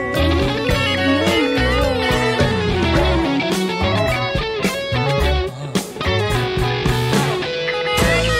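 Electric guitar playing improvised lead lines with bent notes over a rock song recording with bass and percussion.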